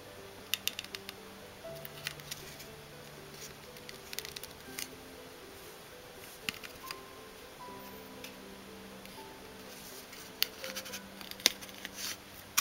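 Soft background music with slow held notes, under scattered sharp clicks and taps of small plastic figure parts being handled as a wing is pushed into its socket on the figure's back. The clicks come in small clusters, loudest near the end.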